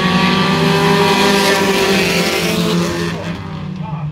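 A pack of pure stock race cars running together on a short oval track, several engines sounding at once and overlapping. The sound swells as the pack goes by and fades about three seconds in as the cars pull away.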